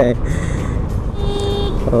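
Hero Glamour motorcycle riding along, its engine and wind noise a steady low rumble, with a brief high tone about halfway through.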